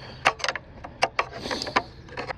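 Screwdriver working down in the water-filled strainer pot of a Pentair SuperFlo VS pool pump, turning the impeller: a run of irregular clicks and knocks of the tip against the impeller, with a little water sloshing about halfway through. The impeller is being spun to free debris that may be jamming it.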